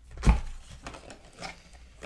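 A dull thump about a quarter second in as a cardboard box of trading-card packs is handled against the table, followed by faint rustling of cardboard and foil card packs.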